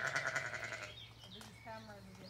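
A Zwartbles sheep bleating once, a loud quavering bleat lasting about a second.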